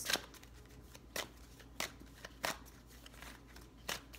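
A deck of tarot cards being shuffled by hand: a few soft, sharp card flicks and slaps at uneven intervals, each over quickly.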